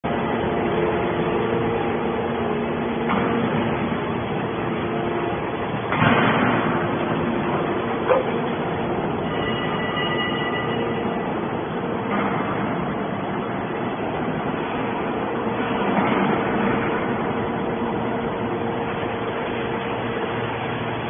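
Hydraulic scrap metal baler running: a steady hum with several held tones, broken by louder rushing surges, the loudest about six seconds in and others about twelve and sixteen seconds in, and a sharp clank about eight seconds in.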